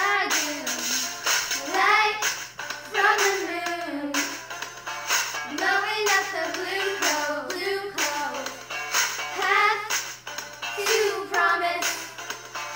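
A pop song playing: a high singing voice carries the melody over instrumental accompaniment.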